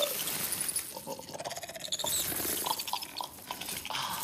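Creature sound effects from a fantasy film soundtrack: a string of short, irregular, animal-like chittering and clicking noises.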